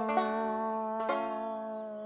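Background music: plucked string notes over a held low note, with a new note struck at the start and again about a second in.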